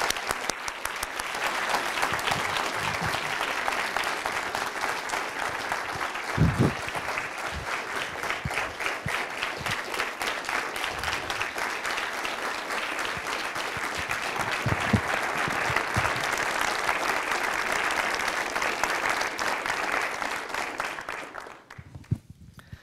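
Audience applauding steadily, the clapping dying away near the end.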